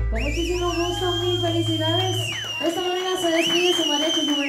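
A person whistling loudly and shrilly in acclaim as the song ends. A first long whistle wavers, holds, then drops away about two seconds in, and a second one starts a little after three seconds in, over voices cheering.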